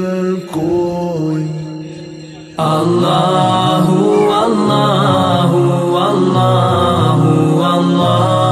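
Background Islamic devotional chant music with voices repeating "Allahu". A held passage fades over the first couple of seconds, then the chant comes back fuller and louder about two and a half seconds in.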